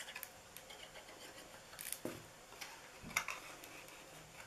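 Faint rustling and light ticks of cardstock being handled as a box's glue tabs are glued and its sides pressed together, with a soft tap a little after three seconds in.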